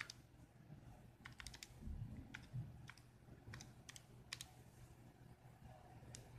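Near silence: room tone with a handful of faint, scattered clicks.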